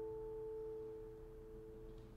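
The closing chord of a classical guitar duo ringing out on nylon strings and slowly fading. A few notes hold on as the rest dies away.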